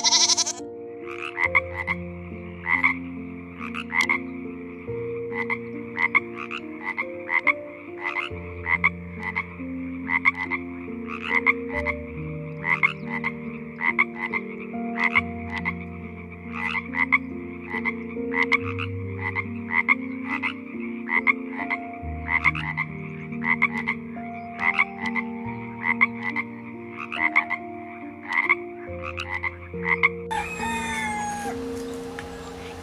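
Frog croaking in a quick, steady series of short calls, about two or three a second.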